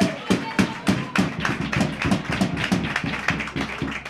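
Hand clapping: a quick, uneven run of sharp claps, several a second, with faint voices behind.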